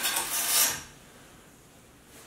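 Sliding glass front of a snake enclosure scraping along its track as it is pushed open: one short rasp lasting under a second.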